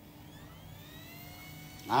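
Faint siren, its pitch rising slowly, over a steady low hum; a woman's voice starts just at the end.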